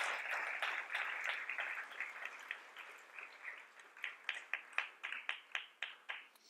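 An audience applauding. The applause thins out after about three seconds, and then a few separate claps carry on at a steady pace of about five a second.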